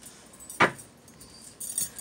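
A single sharp tap about half a second in, then light metallic jingling near the end.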